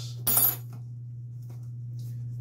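One short, sharp clatter about a quarter second in as a small cardboard product box is handled and opened, then faint ticks of handling over a steady low hum.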